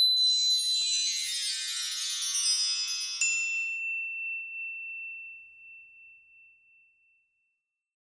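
Logo sting of shimmering chimes: a dense cascade of many high ringing tones that spreads downward and fades. About three seconds in, one bright ding rings on as a single high tone and dies away over the next few seconds.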